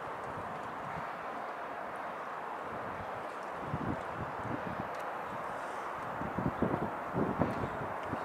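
Steady outdoor background hiss with irregular low buffeting gusts of wind on the microphone, starting about halfway through and growing stronger near the end.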